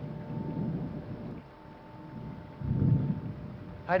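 A low rumbling noise that swells twice, once around the start and louder about three seconds in, over a faint steady hum.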